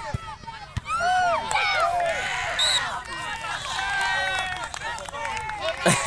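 Several young players shouting and calling to one another on a football pitch, their high-pitched voices overlapping. A sharp knock of the ball being kicked comes near the start.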